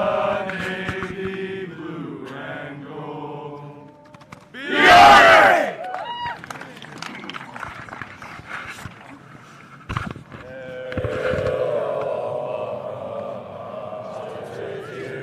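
A group of men's voices singing together in unison, broken about five seconds in by a loud, short group shout; quieter singing carries on after it.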